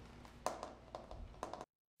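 Faint room tone with a few soft, short taps, cutting off to silence just before the end.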